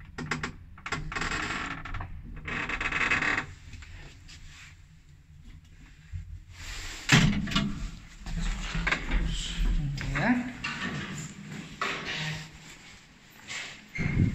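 Lift car doors sliding open with a rattle in two bursts, followed by footsteps and clothing and handling rustle as someone steps out of the car.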